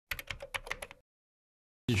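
A quick run of about eight sharp, typing-like clicks in under a second, cut off abruptly into dead silence. A man's voice starts just before the end.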